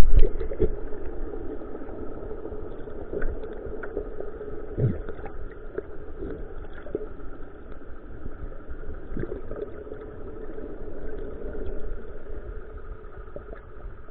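Steady engine hum heard underwater, with a few faint clicks and knocks scattered through it.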